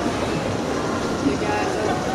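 Inclined moving walkway in a store running with a steady mechanical rumble, with voices faintly over it.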